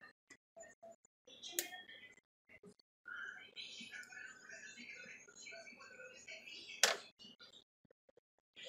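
Faint, indistinct voice in the background, with two sharp clicks: one about one and a half seconds in and one near the end.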